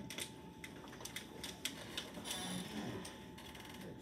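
Light, irregular clicks and taps, several close together in the first two seconds, then fewer, over faint room noise.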